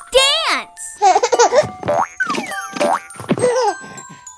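Cartoon children's voices exclaiming in short bursts, mixed with cartoon sound effects that slide in pitch, over light children's music.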